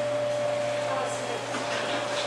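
Steady machine hum with a constant high whine running under it, unchanging throughout.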